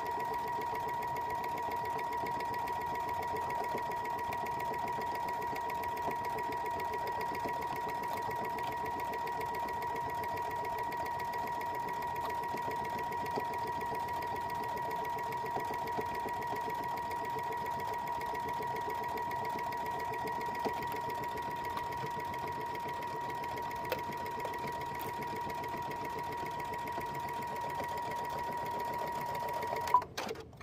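Domestic electric sewing machine running continuously at a steady speed, sewing rows of topstitching through a folded fleece flange, with a steady whine; it stops near the end.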